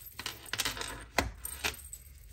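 A tarot card pulled from the deck and laid down on the table: a few sharp clicks and taps, the loudest a little over a second in.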